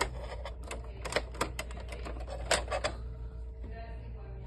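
A quick, irregular run of sharp clicks and taps, about a dozen in three seconds, as a hand moves the cables inside a metal breaker panel, over a low steady hum.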